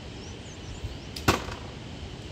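An arrow shot from a bow in a recreational archery game: one sharp snap about halfway through as the arrow is loosed.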